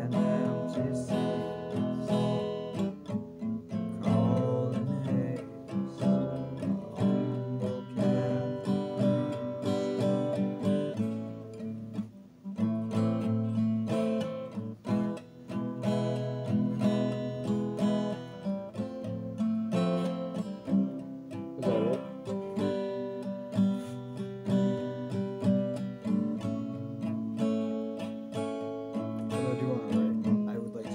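Guitar being played, a continuous passage of picked and strummed notes with a couple of sliding notes.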